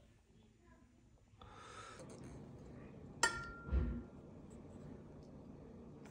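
A utensil clinks once against a dish about three seconds in, with a short ringing tone, followed by a dull low thud, over faint room noise.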